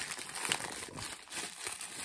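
Plastic packaging crinkling irregularly as hands work a bubble-wrap bag and a thin black plastic bag off a small vinyl figure.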